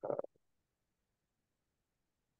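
A short, low vocal sound from a man's voice, about a quarter of a second long, right at the start, then near silence.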